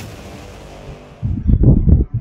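Logo-intro sound effect: a whoosh that fades out over about a second, then loud, deep rumbling pulses coming in an irregular rapid pattern just past a second in.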